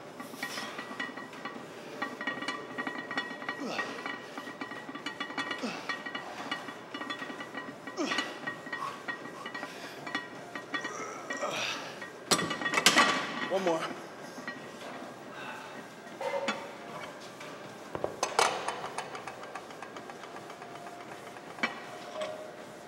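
Gym room sound: a steady background of music and voices, broken by a few loud metal clanks from a loaded barbell and its weight plates. The loudest clanks come about twelve seconds in and again near eighteen seconds.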